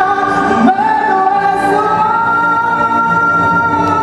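A man singing into a handheld microphone over amplified backing music, holding one long steady note through the second half.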